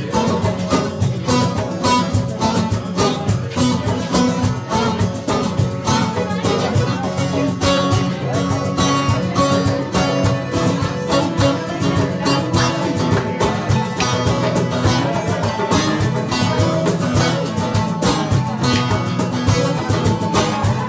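Instrumental passage on a bağlama (long-necked Turkish saz), plucked melody notes over a steady rhythm from a darbuka goblet drum.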